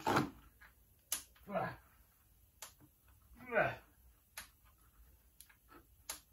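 Mostly quiet, with two short wordless murmurs from a man and a few sharp, light clicks and taps as a plastic drain pan is handled under the engine.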